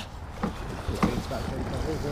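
Wind rumbling on the microphone aboard a small fishing boat, with two light knocks, about half a second and a second in.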